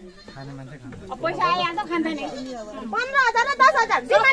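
Several people talking over one another at close range, with some high, wavering voices.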